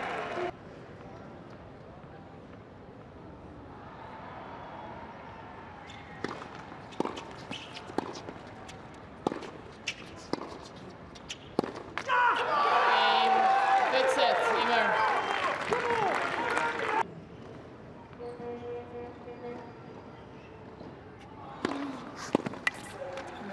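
Tennis rally: sharp pops of racquet strikes and ball bounces about every half second to a second, followed by about five seconds of loud crowd cheering with shouts. Quieter court ambience follows, with a few more ball strikes near the end.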